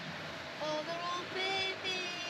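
Steady road and engine noise inside a moving motorhome's cabin, with a high voice making two drawn-out, sing-song exclamations, one about half a second in and one about a second and a half in.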